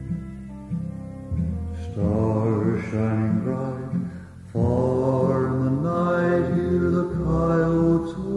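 Instrumental break of a western song: acoustic guitar picking, joined about two seconds in by a violin playing long, held notes in two phrases.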